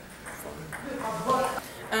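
A man speaking briefly: just speech, with no other clear sound.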